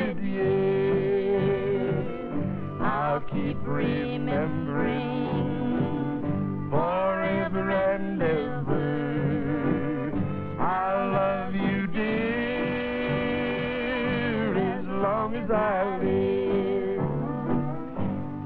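A man and a woman singing a slow country song together in harmony, with acoustic guitar accompaniment.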